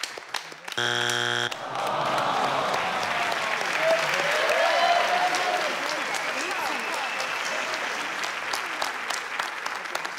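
Game-show wrong-answer buzzer sounds once, about a second in and lasting under a second: the answer is not on the board, a third strike. Then studio applause with cheers and shouts.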